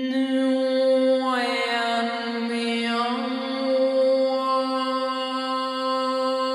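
A woman's voice toning a long, unbroken chant-like note without words. The note holds steady, and its vowel shifts about a second in and again around three seconds.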